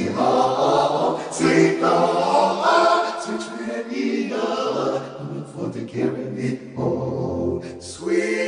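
A solo male voice sung through a Roland VP-550 vocal designer, which turns it into a full choir-like chord of many voices. The choir sings wordless held notes, the chord changing about every second.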